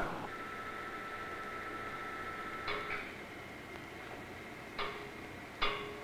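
Faint steady hum with three short, sharp clicks, the first a little under three seconds in and the last two near the end.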